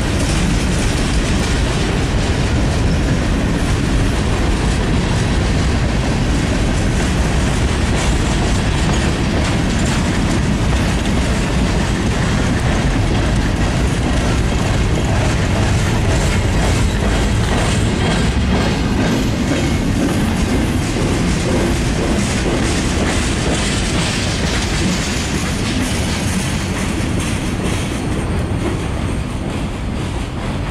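Freight cars rolling past on steel wheels: a steady rumble with the clatter of wheels over the rail joints, easing off near the end as the last cars go by.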